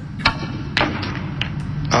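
Four sharp clicks, roughly half a second apart: snooker balls striking, cue on cue ball and balls knocking together.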